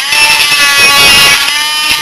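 Dremel rotary tool with a small sanding bit grinding into the plastic around a disc's centre hole: a steady high-pitched whine with several stacked tones, easing slightly in loudness shortly before the end.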